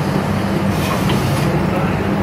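Injection molding machine running with a steady, loud low hum, with a faint hiss about a second in.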